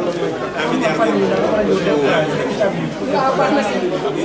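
Indistinct chatter: several people talking at once, their voices overlapping in a large room.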